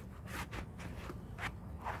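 A few short rustling, brushing sounds of pepper-plant leaves and stems being handled as bell peppers are snipped off.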